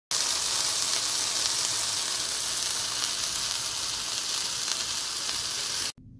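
Smashed ground-beef burger patty sizzling steadily in its rendered fat on a hot pan. The sizzle cuts off suddenly just before the end.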